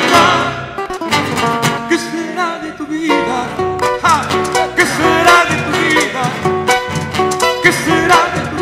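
Live Peruvian criollo vals: acoustic guitars plucking a busy accompaniment under male voices singing.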